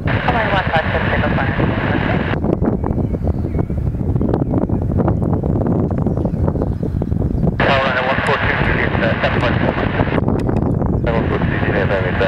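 Steady low rumble of wind on the microphone over a distant twin-engine jet airliner taxiing. Bursts of radio voice chatter switch on and off abruptly over it.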